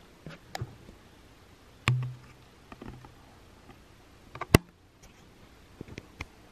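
Handling noise from a handheld compact camera being turned around: scattered light clicks and taps. The loudest is one sharp click about four and a half seconds in, and a short low hum comes about two seconds in.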